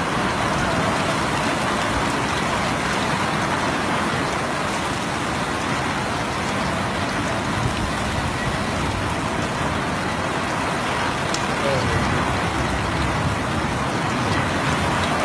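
Heavy rain pouring steadily, an even hiss that holds at one level throughout.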